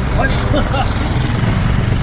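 Motor scooters running at low speed, a steady low engine rumble as they ride toward the camera, with faint voices in the first second.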